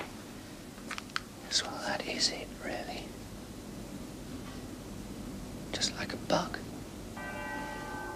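A man whispering to himself in two short breathy bursts, then a bell begins to ring about a second before the end, its tone held steady.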